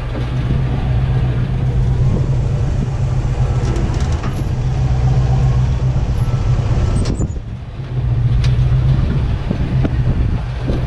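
Engine of an old Willys Wagon 4x4 running at crawling speed over a rocky trail, a steady low drone that eases off briefly about seven and a half seconds in, then picks up again. Scattered knocks and clicks from the truck working over the rough ground.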